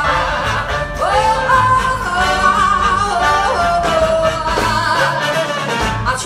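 A live band playing with a singer over it, holding long notes with vibrato and sliding between them over a steady beat.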